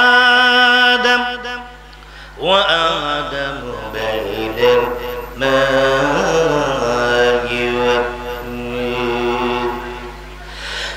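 Islamic dhikr chanted by a man's voice through a microphone. It opens with one long held note, drops away briefly about two seconds in, then comes back as a fuller, wavering chant in which several voices overlap.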